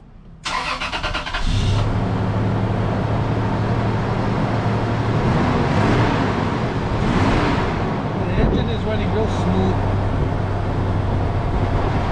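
A 1996 Toyota Tacoma's 3.4-litre V6 cranked by the starter for about a second, then catching and settling into a steady idle. It is a test start with the holed number-four spark plug wire taped over, to see whether the cylinder-four misfire (code P0304) clears.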